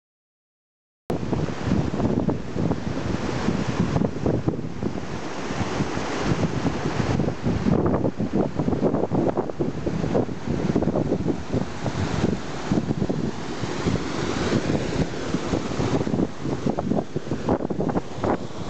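Heavy wind buffeting the microphone in gusts over the rush of a stream's white water pouring through a stone channel, cutting in about a second in after dead silence.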